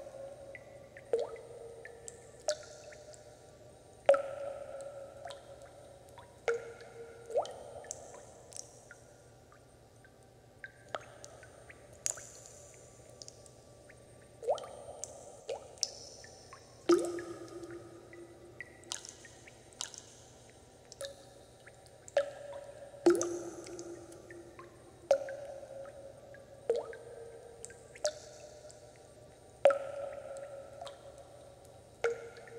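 Water drops falling one by one into water, each a sharp plink followed by a short pitched ring, at an irregular pace of about one a second.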